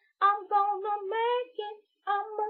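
A woman singing unaccompanied in a fairly high voice: a string of short held notes with brief breaks between phrases.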